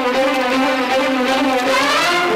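Instrumental background music with steady, held notes.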